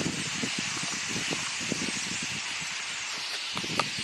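Dense, hissing chatter of a large flock of starlings, with irregular low rumbles underneath and a single sharp knock near the end.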